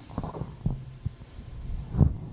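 Handling noise from a handheld microphone: a few dull low thumps, one with a brief hum, the loudest right at the end.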